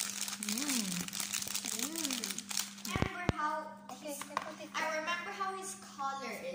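Clear plastic wrap crinkling and rustling as it is peeled off a small children's painting board, dense over the first half and ending with a couple of sharp clicks. A child's voice is heard at times, more in the second half.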